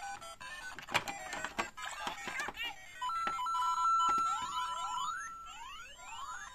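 Electronic chiptune jingles and beeps from the speakers of LEGO Mario and Luigi interactive figures, with a few sharp plastic clicks about a second in as the figures are handled. A long held beep starts about three seconds in, followed by a run of rising sweeping tones near the end.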